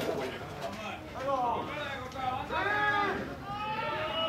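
Players' voices calling out in several long, drawn-out shouts that rise and fall in pitch, starting about a second in: shouted calls at an amateur baseball game.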